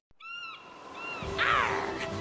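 Two short bird cries in the first second, like gulls over the sea, followed by a falling swoosh in pitch about halfway in.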